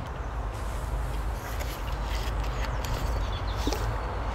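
Steady outdoor background noise, a low rumble with a faint hiss, with a few faint clicks in the middle and near the end.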